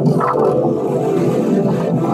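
Loud, heavily distorted audio from a logo effects edit playing back: a dense, steady mass of warped tones with no speech.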